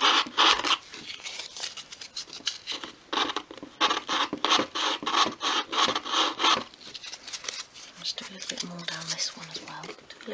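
180-grit sandpaper rubbed back and forth by hand over the varnished edges of a miniature obeche-wood workbench, sanding away varnish in quick scratchy strokes that thin out after about six and a half seconds.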